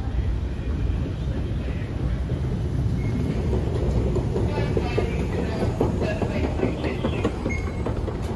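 London Underground escalator running: a steady low rumble with faint clacking from the moving steps and handrail.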